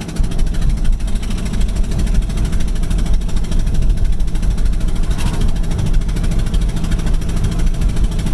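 VW Mk6 TDI common-rail four-cylinder diesel driving along on three cylinders, heard from inside the cabin. Cylinder four has its glow plug blown out of the head, so the open glow plug hole makes a fast, even, very loud pulsing over the engine note. The speaker calls it ridiculously loud.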